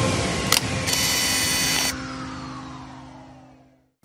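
Camera-shutter sound effect laid over a music sting: a sharp click about half a second in, then about a second of hiss. After that the music rings away and fades to silence near the end.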